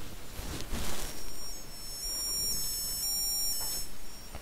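Small piezo disc speaker driven by a Puck.js microcontroller with a square wave, beeping a two-tone siren that switches between 800 Hz and 600 Hz every half second. It sounds thin and high, not desperately quiet. It starts about a second in, after some handling rustle, and stops just before the end.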